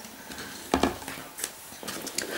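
Plastic bottles being handled and set down on a shelf: a dull knock a little under a second in, then a couple of faint light clicks.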